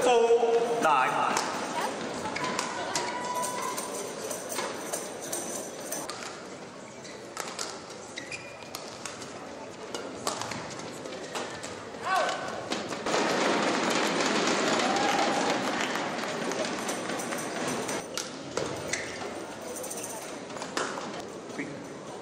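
Badminton rallies: sharp racket strikes on the shuttlecock, a player's shout at the start, and spectators cheering and applauding for a few seconds from about 13 seconds in.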